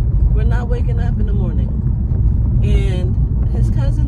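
Steady low road and engine rumble inside a moving car's cabin, under a woman talking.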